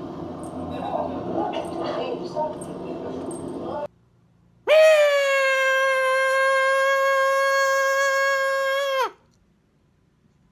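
A man holding one long, loud, high sung note for about four seconds. It glides up into pitch at the start, stays steady, then cuts off abruptly.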